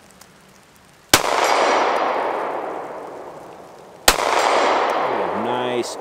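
Two shots from a Stoeger STR-9C 9mm compact pistol, about three seconds apart. Each shot is followed by a long echo that slowly dies away, with a faint clang from a steel target.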